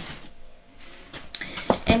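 Soft handling noises as a skein of acrylic yarn is picked up: faint rustle, then a few light taps in the second half. A woman starts to speak right at the end.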